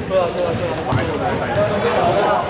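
Indoor basketball game in a hall: players' voices calling out, and a ball bouncing on the hardwood court with sharp knocks about a second in. A short high squeak comes just before the knocks.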